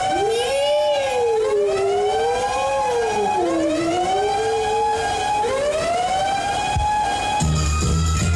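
Siren-like wailing sound in the breakdance music track: several overlapping tones swooping up and down in pitch with no beat under them, until the drums come back in near the end.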